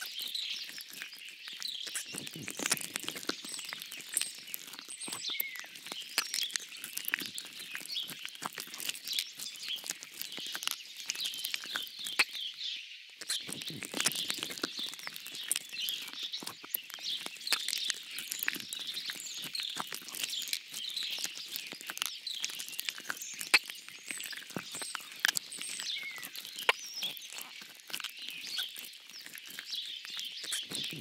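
Recorded birdsong: many small birds chirping and twittering in a dense, continuous chorus, with scattered light clicks.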